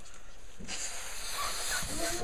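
A child blowing air into a rubber balloon: a breathy hiss of air lasting about a second, starting a little way in.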